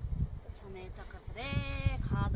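A single bleat from a goat or sheep, one steady call of about half a second near the end.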